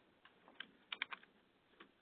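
Faint clicks of typing on a computer keyboard: a few scattered keystrokes, with a quick run of three or four about a second in.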